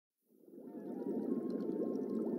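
Underwater fish-tank ambience from a DVD menu's background loop: low bubbling and gurgling water. It fades in from silence about a quarter second in as the menu loads.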